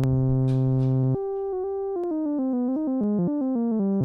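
Software modular synth (VCV Rack 2): a sawtooth oscillator through a low-pass filter, with no envelope yet, so it sounds as a continuous drone. It holds one low note, then about a second in plays a quick run of notes from the MIDI keyboard that steps downward in pitch. Its upper overtones are cut off by the filter.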